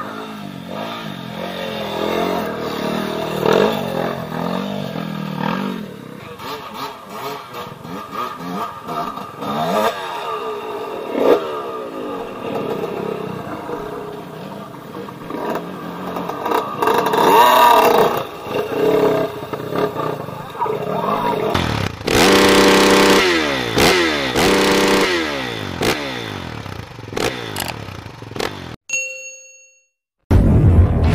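Dirt bike engines running and revving on a trail, the pitch rising and falling as the throttle is worked, with a steadier, louder stretch a little after the two-thirds mark. The engine sound cuts off suddenly about a second before the end, leaving a few short electronic tones.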